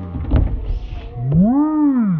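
A brief low rumble and knock of a child sliding down a plastic playground slide, then a long drawn-out vocal call from one of the children playing, rising then falling in pitch over about a second.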